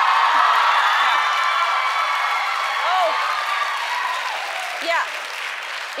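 Studio audience applauding and cheering, with many voices whooping together; it is loudest over the first few seconds, then dies down toward the end.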